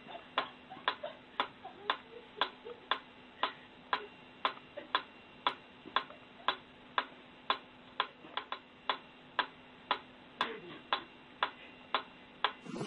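Mechanical pendulum metronome ticking steadily, about two sharp clicks a second, with a few extra out-of-step clicks in between.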